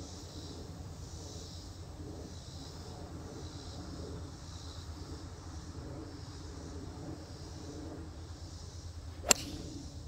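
A single sharp crack of a golf club striking a teed-up ball near the end, a tee shot on a par 4, over a steady quiet outdoor background.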